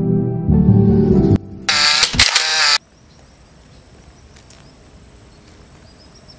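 Intro music and countdown sound effect: a loud low sustained chord, then a bright high-pitched flourish that cuts off about three seconds in. After it comes a low, quiet outdoor background.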